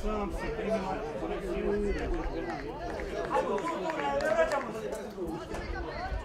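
Indistinct chatter and calls from several voices around an amateur football pitch, overlapping, with no single voice clear.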